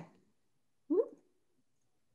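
Mostly near silence, broken by one brief rising vocal sound about a second in.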